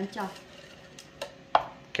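A few sharp knocks and clicks as chopped ingredients are tipped from a glass bowl into a plastic personal-blender cup, the loudest a little past halfway.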